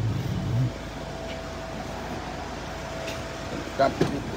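Hyundai Starex van's engine idling, heard from inside the cab: a steady low rumble with a faint steady whine over it.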